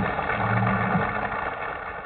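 A rock and roll band's final chord ringing out: a held low bass note under a noisy wash of sound, fading steadily as the song ends.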